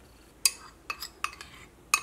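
Metal spoon clinking against a bowl and a steel saucepan while the bowl is scraped out into the pan, about five sharp clinks with a short metallic ring.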